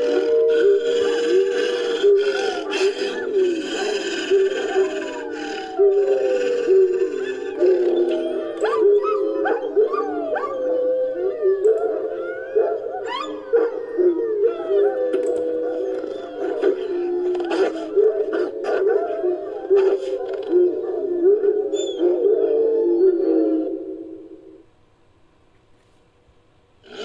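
Wolfdog sound effect: several overlapping howls and whines that slide up and down in pitch, over music. It all stops shortly before the end.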